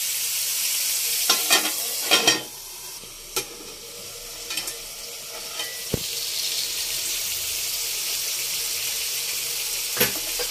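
Food frying in hot oil in a pan, a steady sizzle, with a few strokes of a stirring spoon against the pan in the first few seconds. The sizzle drops back after about two and a half seconds and builds again from about the middle.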